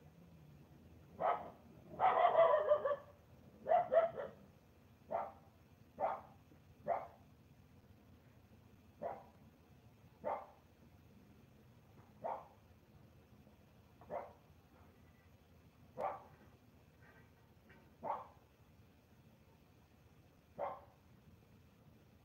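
An animal calling in a series of short calls, about a dozen, spaced one to two seconds apart and growing sparser. A longer rattling burst comes about two seconds in.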